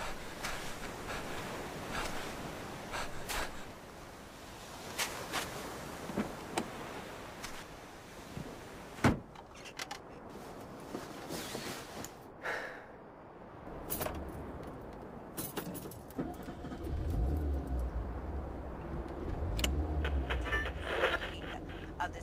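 Keys jangling and small handling clicks, then a car door shutting about nine seconds in. About five seconds later a car engine starts and runs steadily, heard from inside the car.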